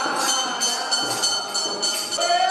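Bells ringing in a fast, even rhythm, about four strikes a second, with a steady high ringing that carries on between the strikes.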